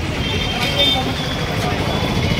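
Steady low background rumble of an outdoor street, with faint voices talking in the background.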